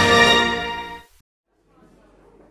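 Television channel ident jingle music: a bright held chord that fades out about a second in, followed by a brief silence and faint room sound near the end.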